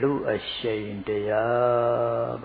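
A man's voice chanting Pali verses in drawn-out, sustained notes, with short breaks between phrases.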